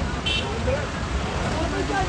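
Crowd of men talking over a steady low rumble of road traffic, with a brief high beep about a third of a second in.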